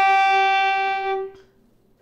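Violin playing one long bowed G, third finger on the D string, held steady and then fading out about a second and a half in.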